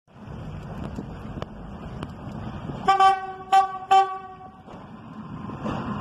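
Diesel railcar's horn sounding three short blasts on one note, the last held a little longer, over the low rumble of the approaching railcar, which grows louder near the end.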